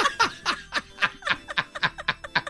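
Men laughing, a run of short quick chuckles about four a second that fade as the laugh winds down.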